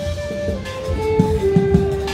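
Buskers playing Christmas music on violins: a slow melody of long held notes stepping down in pitch, over a low beat and crowd chatter.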